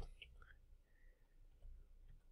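Near silence: quiet room tone, opened by a single sharp click from a computer keyboard key.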